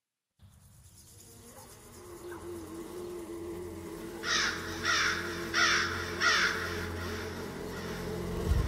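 A low, steady drone fades in, and over it a crow caws four times, about one and a half caws a second.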